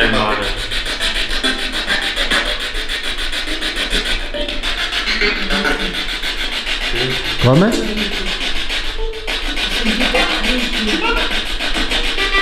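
Spirit box sweeping through radio stations: a rapid, even chopping of static broken by brief fragments of broadcast voices and music, the loudest voice fragment about seven and a half seconds in.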